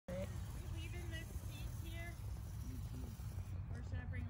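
Faint, high-pitched voices over a steady low rumble.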